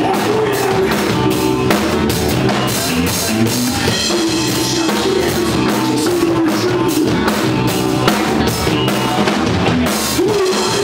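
Rock band playing live and loud, with a driving drum kit under electric guitars.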